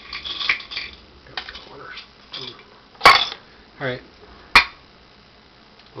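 Small hard objects clacking as someone rummages for a pin: two sharp clacks about a second and a half apart, with quieter rattling between.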